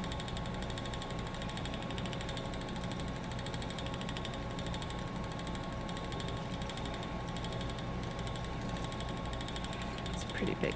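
Ashford Elizabeth 2 spinning wheel running steadily as it is treadled, a continuous mechanical whir with fine fast ticking and a thin steady tone through it.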